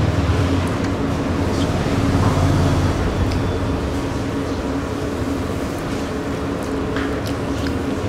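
Steady background hum of a cafe room: a low rumble with a constant drone, the rumble heaviest in the first three seconds, and a few faint clicks.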